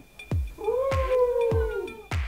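Intro music starting with a steady thumping beat. Over the beat comes one long, drawn-out high wail that rises at first, holds, then falls away near the end.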